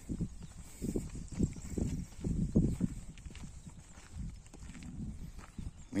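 Irregular soft footfalls on dirt and grass, roughly two a second, as people and animals walk along a farm track.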